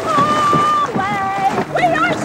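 A woman singing loudly, holding one long high note and then a lower held note, followed by shorter gliding notes near the end.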